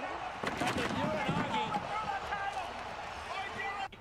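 Wrestling broadcast audio: a commentator talking over the action, with a few thuds of bodies landing. The sound cuts off abruptly just before the end.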